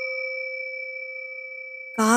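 The lingering ring of a struck bell: a few steady, pure tones slowly fading away.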